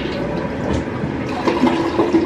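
Water rushing steadily in a bathroom's plumbing.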